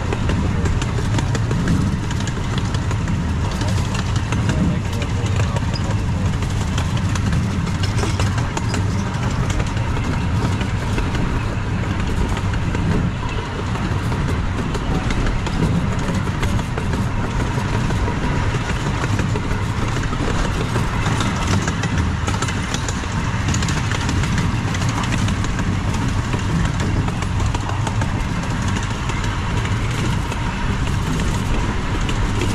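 A miniature park train heard from its passenger car while running: a steady low rumble of the train and its wheels on the track, with a thin steady whine.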